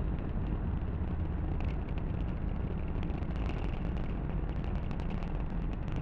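Falcon 9 first stage's nine Merlin engines firing during ascent: a steady deep rumble with faint crackling ticks over it.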